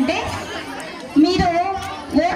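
A woman speaking into a handheld microphone. She breaks off for about a second near the start, then goes on speaking.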